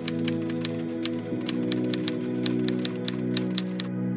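Typewriter key-click sound effect: a quick, uneven run of clicks, several a second, that stops just before the end. Under it, soft background music plays held chords, with a chord change about a second in.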